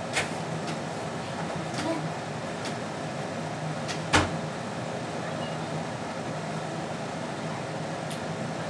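Steady low room hum with a few light clicks and taps, and one sharp knock about four seconds in, the loudest sound.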